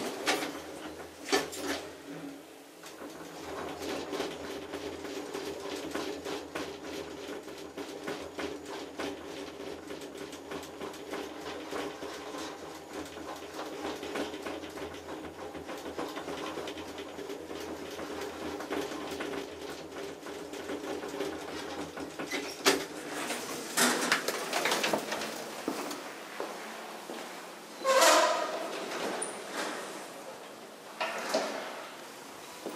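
Elevator machinery humming steadily while the car travels, then a few knocks and, near the end, a louder clatter as the doors work.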